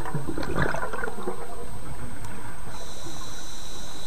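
Scuba diver's exhaled air bubbling out of the regulator for about the first second, crackling over a steady underwater rush heard through an underwater camera housing. A faint high tone joins near the end.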